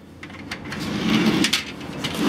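Balcony sliding door being unlatched and slid open, with a few clicks from the latch and frame. A wash of outdoor noise swells in as the door opens.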